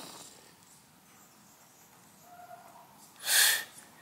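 A pet dog making agitated noises: a faint short whine about two seconds in, then one short, loud bark about three seconds in.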